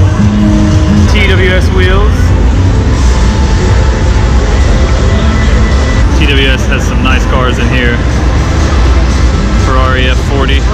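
Loud exhibition-hall din: bass-heavy music from booth speakers with a heavy low rumble under it. A voice comes in over it for a few words about a second in, again around six to eight seconds, and at the very end.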